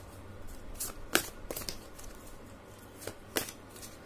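A deck of tarot cards being shuffled and handled: a run of short, sharp card snaps at irregular intervals, the loudest a little over a second in.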